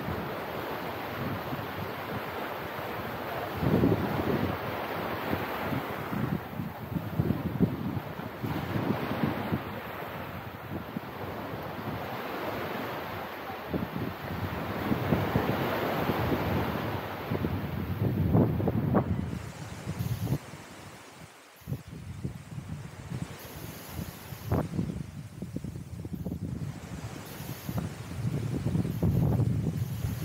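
Small waves washing up onto a sandy beach, the rush swelling and fading every few seconds, with wind gusting over the microphone in low rumbles.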